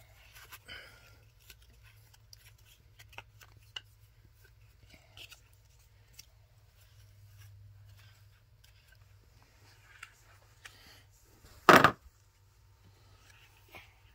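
Cardboard memory-game cards being set down and slid on a carpet: faint scattered clicks and taps. One loud sharp thump near the end.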